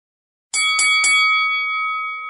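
Boxing ring bell struck three times in quick succession about half a second in, then ringing on and slowly fading.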